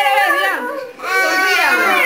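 A young child crying in two long, high-pitched wails, the second falling in pitch at its end.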